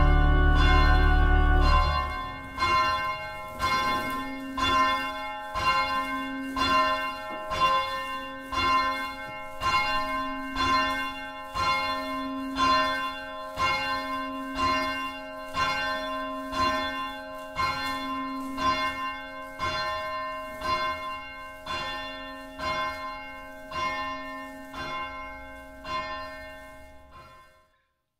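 An organ chord ending, then a single church bell tolling steadily, a little faster than one stroke a second, each stroke ringing on with a hum under it. The strokes fade away near the end.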